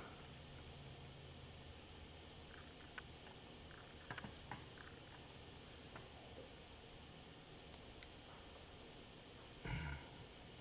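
Near silence: room tone with a few faint clicks in the middle and a brief soft sound near the end.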